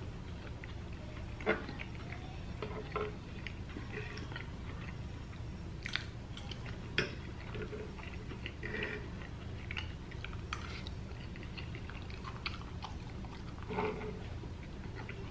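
Close-miked chewing of a soft, cheesy taco lasagna, with wet mouth sounds. A few sharp clicks of a metal fork against the plate come about a second and a half in and again around six, seven and ten seconds.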